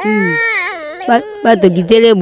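A baby crying, with a long, high, wavering wail in the first second and shorter vocal sounds after it.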